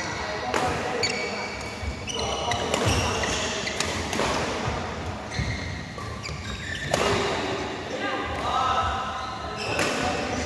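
Badminton doubles rally: rackets smack the shuttlecock every second or two, and shoes squeak and patter on the court floor, echoing in a large hall.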